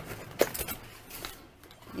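Cardboard product boxes being handled and slid out of a shipping carton: one sharp knock just under half a second in, then a few softer taps and scrapes.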